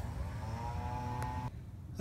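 A spray of aerosol lubricant from a can onto the sliding-door latch mechanism, a steady hiss with a faint tone in it that stops about a second and a half in.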